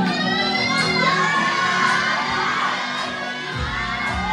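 Dance track playing loud for a stage routine while the audience shouts and cheers over it. A heavy bass beat drops back in near the end.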